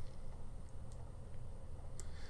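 Quiet room tone with a steady low hum and no speech, and a single faint click near the end.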